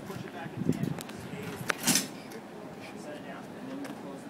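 Faint background voices with a few light clicks, and one short, sharp clack a little before two seconds in as the powered ambulance stretcher is handled.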